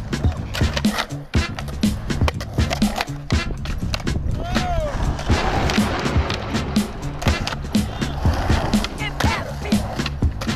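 Skateboards popping, landing and rolling on concrete, with sharp clacks of the boards over a music track with a steady beat and a voice.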